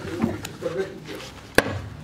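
A single sharp knock about a second and a half in, with a smaller click before it and faint voices in the background.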